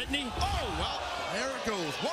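Thuds of wrestlers' strikes and a body hitting the ring mat, among gliding crowd voices.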